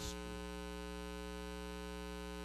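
Steady electrical mains hum, a buzzy tone with many evenly spaced overtones that holds unchanged, with the tail of a man's word right at the start.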